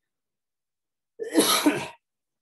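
A person coughing: one short, harsh burst in the second half, lasting under a second with two pushes.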